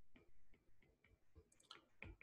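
Faint, irregular ticks of a stylus tip tapping the glass screen of a tablet during handwriting, a scattering of light taps.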